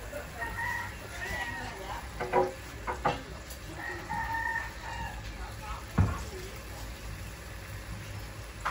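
A rooster crowing twice, each crow held for about a second, near the start and about halfway through. A few sharp knocks come in between and after, the loudest about three-quarters of the way in.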